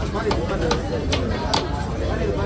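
Cleaver chopping through a sole on a wooden log block: several sharp knocks at irregular spacing.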